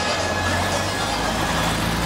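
Busy street ambience: a steady low rumble under a dense haze of crowd noise and music from the bars.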